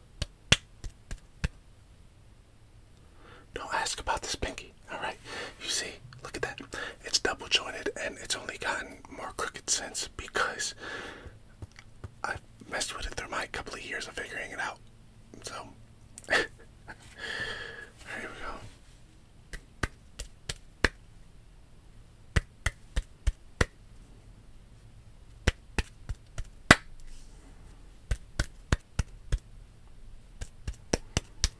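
Close-miked whispering through roughly the middle of the stretch. Sharp finger snaps come just before it and in an irregular run through the last third.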